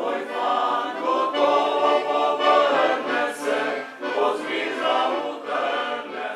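Male choir singing a song in several voices, in phrases with short breaks between them.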